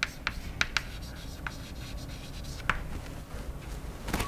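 Chalk writing on a blackboard: scratchy strokes with scattered sharp taps of the chalk against the board, several in the first second and one more near three seconds in.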